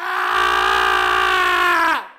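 Channel logo sting: one long pitched note that starts abruptly, holds steady for about two seconds and dips in pitch as it cuts off.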